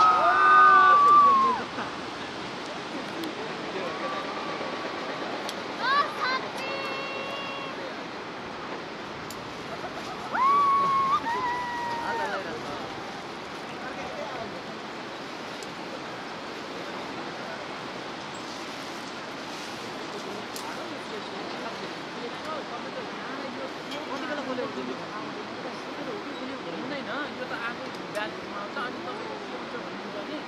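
A person screaming loudly as the canyon swing jumper drops, with further shouts about six and ten seconds in. Underneath, a steady rushing noise: the river in the gorge far below.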